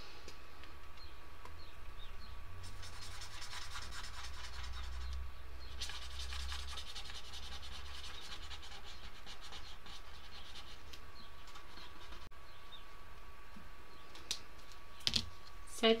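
Felt-tip pen colouring in on paper on a clipboard: rapid back-and-forth scratchy strokes, starting about three seconds in and stopping about twelve seconds in. A few light knocks follow near the end.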